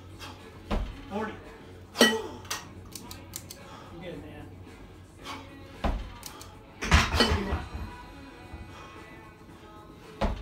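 Two 20 kg competition kettlebells clanking together as they are jerked overhead and dropped back to the rack, with sharp metallic impacts in two clusters about five seconds apart, one cluster per rep.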